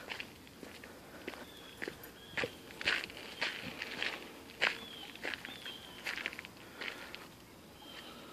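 Footsteps on a dirt-and-gravel path, irregular steps about two a second.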